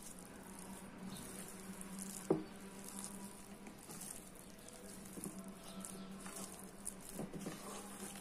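Hands kneading soft, sticky bun dough in a plastic bowl: faint wet squishing and patting, with one sharper knock about two seconds in, over a steady low hum.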